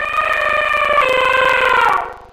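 Logo-intro sound effect: one loud, sustained pitched tone that shifts slightly about a second in and bends down in pitch near the end.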